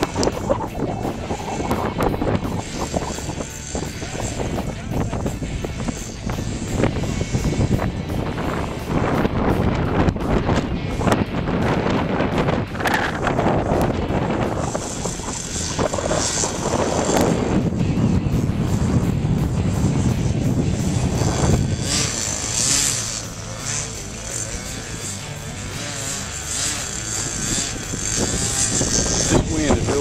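Radio-controlled model airplane's engine and propeller running as the plane flies low and touches down on a grass field, with wind buffeting the microphone; from about halfway on the engine's high whine comes through more clearly as steady tones.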